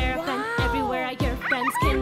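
Children's nursery-rhyme song: a sung melody with gliding notes over a bouncy backing track with a steady beat.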